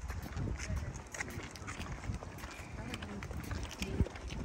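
Footsteps of several people walking on a concrete path, a scatter of light, sharp steps, with indistinct voices of people around.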